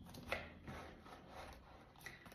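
Faint rubbing and a few soft knocks as a stiff sparring glove is picked up and handled.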